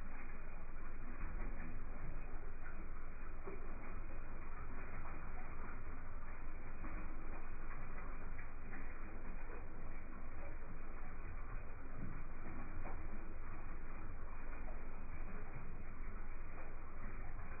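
Steady low hum and hiss of background room noise, with faint scattered ticks.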